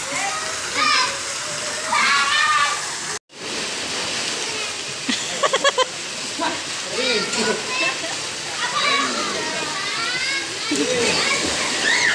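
Children's voices shouting and calling out in a swimming pool, over a steady rush of water pouring into the pool from artificial rock falls.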